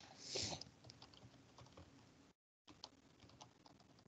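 Faint, scattered light clicks from a computer keyboard and mouse, heard through a webinar microphone. A short breathy hiss comes about half a second in.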